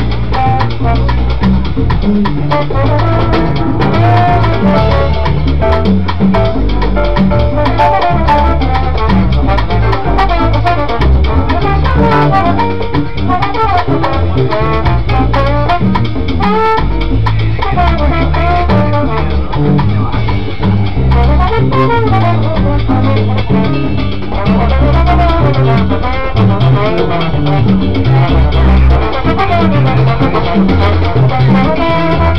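Live salsa band playing an uptempo tune: trombone melody lines over electric bass, piano and Latin percussion.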